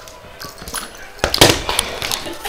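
A puppy knocking a GoPro camera about on a wooden floor: irregular knocks and scuffs on the camera, with a loud cluster of knocks about a second and a quarter in.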